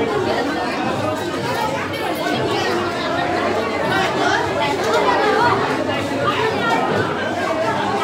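Chatter of many people talking at once in a crowded room, the voices overlapping so that no single speaker stands out.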